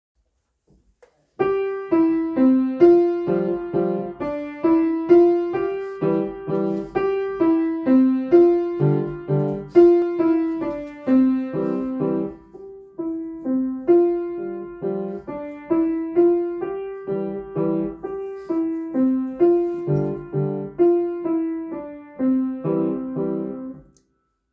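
Steinway grand piano playing a simple beginner-level melody, one or two notes at a time in the middle register. It starts about a second and a half in, pauses briefly near the middle, and the last note dies away at the end.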